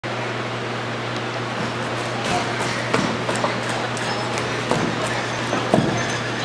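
Steady low hum and hiss of room noise in a large hall, with a few scattered, irregular knocks and taps.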